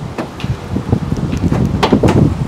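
Wind rumbling on the microphone, with outdoor traffic ambience and a light click near the end.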